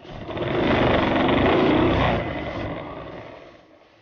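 Moped engine running with a rush of wind, swelling up in the first second and dying away near the end.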